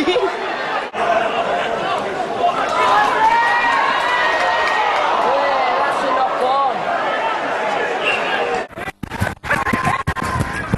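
Crowd chatter: many voices talking and calling over one another, no words clear. Near the end the sound cuts out sharply twice.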